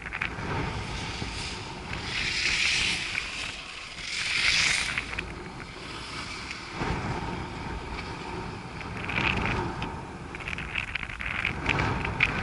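Wind on the microphone of a camera riding a chairlift: a steady low rumble with hissing swells every few seconds, and a few light clicks near the end.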